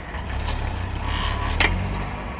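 Car engine idling, a steady low rumble heard from inside the cabin, with a single sharp click about one and a half seconds in.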